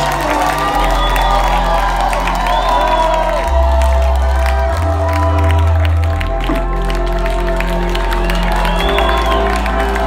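Live rock band playing held synth and bass chords that change every second or two, with a crowd cheering over the music.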